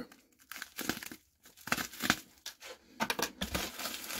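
Kraft paper mailer bag crinkling and tearing in short scratchy bursts as a letter opener is worked into it, sparse at first and busier near the end.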